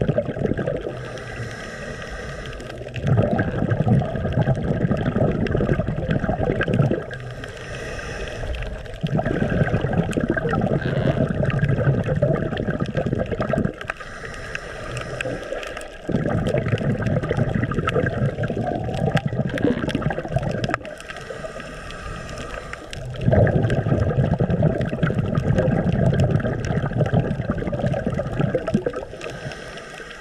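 Scuba breathing heard underwater through the regulator, about four breaths. Each one is a short, quieter hissing inhale of about two seconds, followed by a longer, louder rumbling stream of exhaled bubbles lasting four to six seconds.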